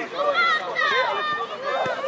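Several high-pitched voices shouting and calling over one another during a children's football match, with a short thud near the end.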